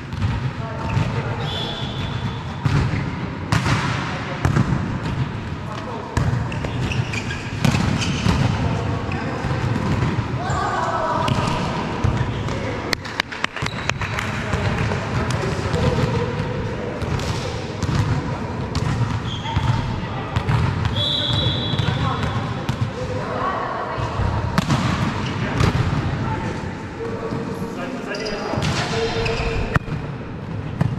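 Volleyball being played in a large sports hall: repeated sharp hits of the ball on hands and floor, with players' voices calling out and a few short high sneaker squeaks.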